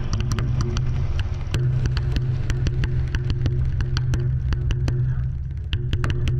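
Leaf Audio Microphonic Sound Box played by hand: fingers tap and scrape its contact-miked ridged sliders and pad, making rapid, irregular clicks over a steady low drone from its effects, with a higher tone stepping up and down. The drone dips briefly near the end.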